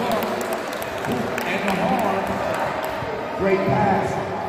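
Indoor basketball gym: people talking over one another, with scattered sharp knocks of basketballs bouncing on the hardwood court.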